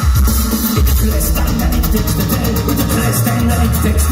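Live electronic body music played loud through a club PA: a steady electronic drum beat over a heavy synth bass line, with no vocals in this stretch.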